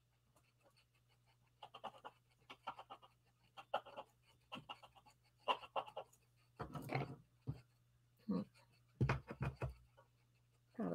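Faint scratching of a pen tip on cardstock through a plastic stencil, in short repeated strokes. A few louder scuffs come near the middle and again near the end.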